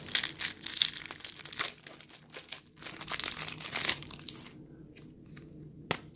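Thin plastic wrapping crinkling and rustling as it is worked off a stack of cardboard card dividers. The crackling is busy for the first four seconds, then dies down to a few faint ticks.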